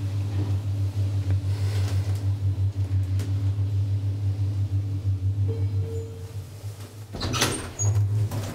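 Schindler traction elevator car travelling down one floor, with a steady low hum from the drive that fades about seven seconds in as the car slows to a stop. A short burst of noise follows near the end.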